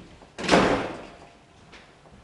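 A door shutting with a single loud bang about half a second in, echoing briefly in the room.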